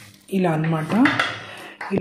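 A woman's speaking voice, with a short metallic click near the end.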